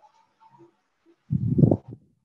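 A brief low vocal sound, like a hum or throat-clearing into the microphone, lasting about half a second near the end.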